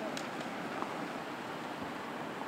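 Steady outdoor street noise from idling vehicles and traffic, an even hiss with a few faint clicks just after the start.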